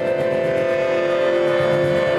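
Improvised music with a bowed double bass and an accordion: several steady tones held together as one chord, without a break.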